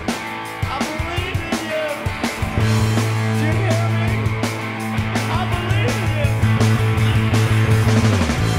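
Live rock band recording with drums and singing, with a Jazz-style electric bass played along on its neck pickup. A loud low note comes in about two and a half seconds in, is held, and slides down near the end.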